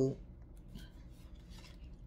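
A voice trails off at the start, then a quiet pause of room tone with a steady low hum and a few faint, brief soft noises.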